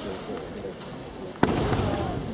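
Kendo fighters' drawn-out shouts, then about one and a half seconds in a single sharp crack of a bamboo shinai strike landing as the fighters close in, followed by louder shouting.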